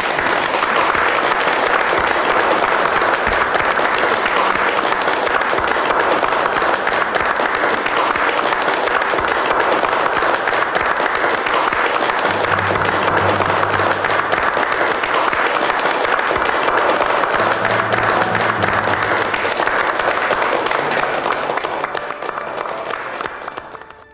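A roomful of people applauding steadily, with soft background music underneath; the clapping fades away near the end.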